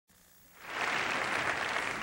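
Audience applauding, fading in about half a second in and then holding steady.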